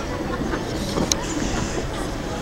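Outdoor ice-rink ambience: a steady low rumble with faint voices of skaters, and one sharp click about a second in.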